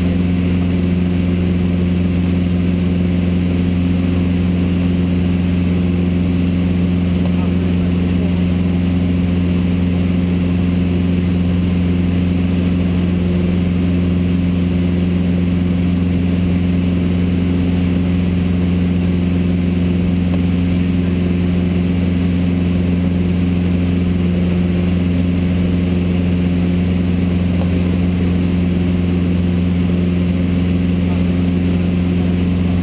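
Steady drone of a single-engine light plane's piston engine and propeller in cruise, heard from inside the cabin, holding one even pitch with no change in power.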